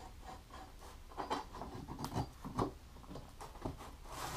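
Light, irregular rubbing and tapping as a curved steel band is shifted by hand on a grid-marked plate, with a few soft knocks about a second in and again past the middle.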